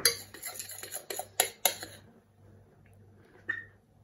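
Metal spoon clinking and scraping against a glass mixing bowl while scooping hollandaise sauce: a few sharp knocks in the first two seconds, then one short ringing clink near the end.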